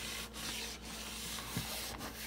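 Sponges soaked in thick soap suds being squeezed and scrunched by hand in a plastic tub, the wet foam squishing in quick repeated squeezes.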